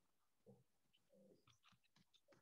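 Near silence: room tone with a few faint computer keyboard keystroke clicks as a tag is typed.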